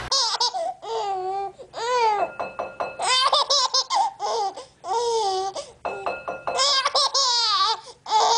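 A baby laughing hard in repeated high-pitched fits, about six bursts of giggling with short breaths between them.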